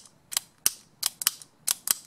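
Sharp plastic clicks and taps, about eight in two seconds at uneven spacing, from a plastic toy figure and magnetic building tiles being handled.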